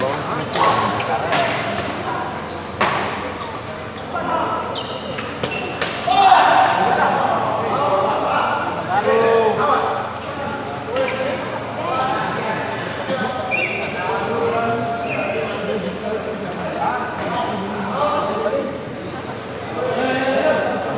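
A few sharp racket strikes on a badminton shuttlecock during a rally in the first six seconds, in a large hall, among the voices of players and spectators. The voices are loudest just after six seconds, then go on as chatter.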